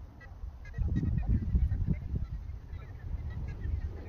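Gusty low rumble of wind buffeting the microphone, loudest about a second in, with faint short bird calls scattered through it.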